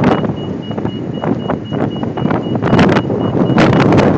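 Loud city street noise: traffic with wind buffeting the phone's microphone. A rapid, high-pitched beeping runs through it and stops a little before the end.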